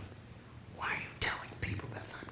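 A man's soft breathy, whispered vocal sound about a second in, with faint mouth clicks after it: a breath or unvoiced syllable between phrases of talk.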